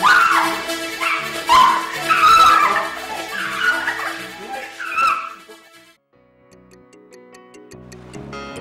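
A woman crying out and wailing in pain while being beaten, a run of loud, high, rising and falling cries over background music. The cries stop about five seconds in, leaving soft music.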